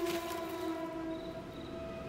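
A held, eerie synth chord of background horror music, made of several steady tones; its lowest note drops out a little past halfway.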